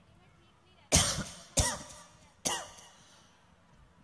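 A person coughing three times in quick succession, close to a microphone: three loud, sharp coughs that each fade within about half a second.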